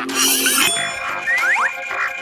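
Comedic cartoon sound effects over background music: a bright shimmer at the start, then a few quick upward-sliding tones.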